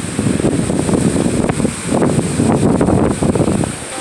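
Strong, gusty storm wind buffeting the microphone: a loud low rumble that swells and dips, easing briefly near the end.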